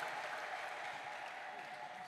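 A church congregation applauding, the clapping slowly dying away toward the end.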